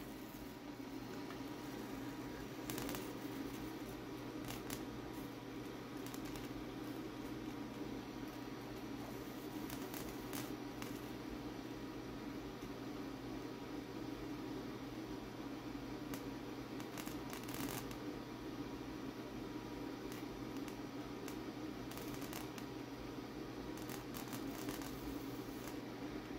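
Solid-state Tesla coil running continuously at about 4.5 MHz with its plasma flame lit: a steady low electrical hum with a faint hiss, and occasional soft crackles scattered through.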